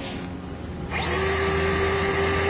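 IML Resistograph drill starting up about a second in, a quick rising whine that settles into a steady high whine, as its fine needle is driven into a timber post to measure drilling resistance and find decay.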